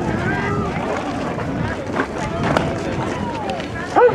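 Overlapping chatter of spectators' voices at a youth baseball game, with a few sharp clicks, ending in a louder voice call from the plate umpire.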